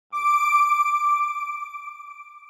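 A single electronic chime note, struck suddenly and left to ring out, fading slowly: the sound logo of a TV channel ident.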